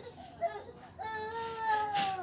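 A young child crying: a short whimper, then one long, high wail starting about a second in.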